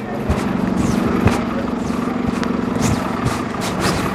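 A London double-decker bus's diesel engine running close by: a steady low hum that drops away about three seconds in, with a few sharp clicks.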